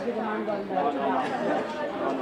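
Spectators chattering: several voices talking at once, no single voice clear.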